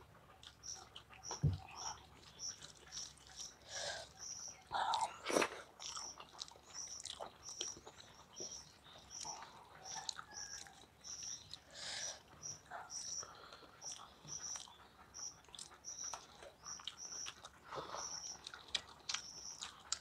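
Two people eating rice and egg curry with their hands: wet mixing of rice and curry, chewing and lip smacks in short irregular bursts. A high chirp repeats about twice a second in the background.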